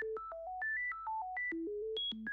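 A ChucK sine-wave oscillator playing a fast random arpeggio: short, pure electronic beeps, about six or seven a second, leaping unpredictably between low and high notes picked at random from a fixed scale.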